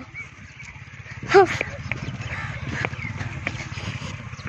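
Motorcycle engine running at low speed with a steady low hum, and one short call about a second and a half in.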